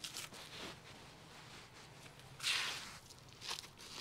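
Potting mix being handled and pressed into a small plastic pot around a rooted cutting: faint soft scuffs and clicks, with one brief louder rustle a little past halfway.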